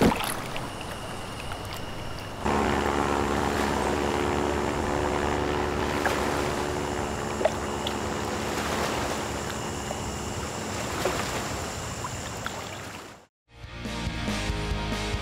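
Light floatplane's piston engine and propeller droning at a steady pitch, growing louder about two and a half seconds in and cutting off suddenly near the end, with music beneath.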